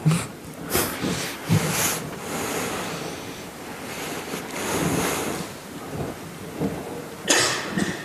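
Breathy, rustling noise close to a handheld microphone, with a few short puffs, over a rising and falling hiss of room noise in a large hall.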